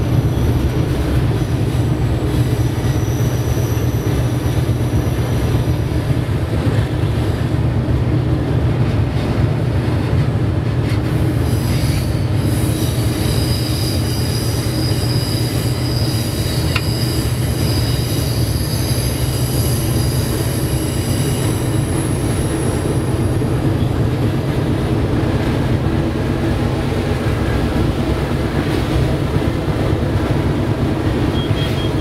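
A GE diesel locomotive's engine drones steadily under load as it climbs a grade, heard from inside the cab. High-pitched wheel squeal from the curves comes in faintly early on and is strongest for about ten seconds in the middle.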